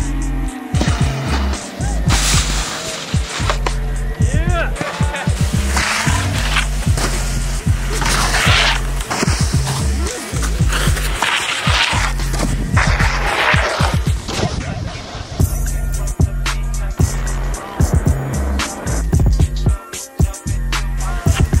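A music track with a heavy, repeating bass line, mixed with snowboard sounds: boards sliding and scraping along rails and snow, with sharp knocks from boards hitting features and landing.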